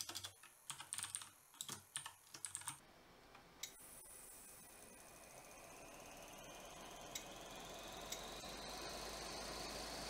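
Computer keyboard typing, a quick run of key clicks for about three seconds. Then a small electric motor spinning an LED fan blade, a faint whine that slowly rises in pitch and grows louder as the motor speeds up.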